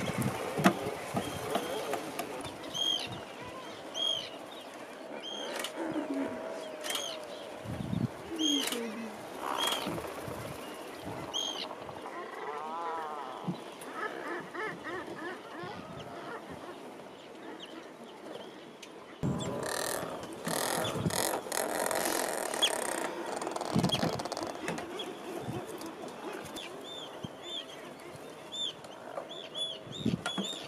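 Seabirds calling in a nesting colony of Atlantic puffins and terns: short, high calls repeat every second or so, with a few lower calls in between. The background grows suddenly louder about two-thirds of the way through.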